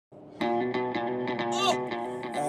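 Music: an electric guitar playing repeated notes in a steady rhythm, coming in about half a second in.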